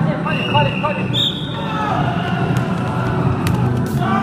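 Echoing sports-hall din of a bubble football game: players' voices and music over a steady hubbub, with a few sharp thuds of the ball or bubbles striking the court near the end.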